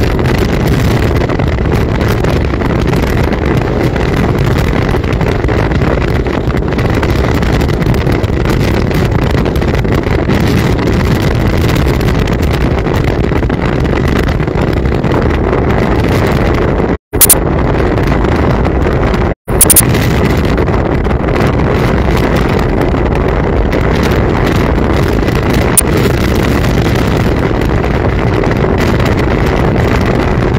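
Steady wind rush on the microphone, with road and engine noise from a pickup truck moving at speed. The sound cuts out briefly twice, about seventeen and nineteen seconds in, and each time comes back with a sharp crackle.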